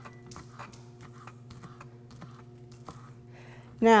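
Kitchen knife chopping green onion on a plastic cutting board: light, irregular taps a few times a second, over a faint steady hum.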